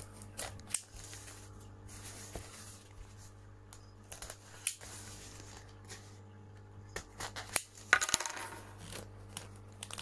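Small clicks, taps and scratching as a sealed polystyrene box is worked open with a small hand tool. About eight seconds in there is a louder rasping scrape lasting about a second. A faint steady hum runs underneath.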